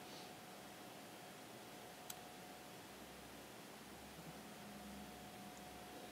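Near silence: faint steady hiss of room tone with a faint steady tone under it, and one small click about two seconds in.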